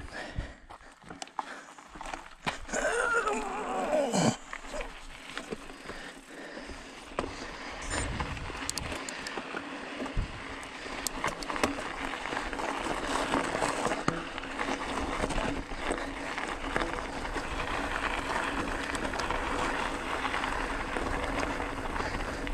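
Bicycle with knobby tyres ridden over a loose gravel desert track: tyre crunch and frame rattle over stones, with wind on the microphone, settling into a steady, gradually louder noise from about eight seconds in. A brief falling squeal is heard about three seconds in.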